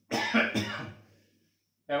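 A man clearing his throat with a single cough, under a second long, fading out.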